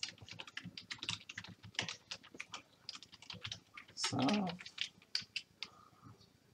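Computer keyboard typing: a quick, uneven run of key clicks. A short spoken "oh" breaks in about four seconds in.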